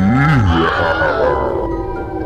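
A deep creature groan that rises and then falls in pitch within the first half second and fades away, over background music.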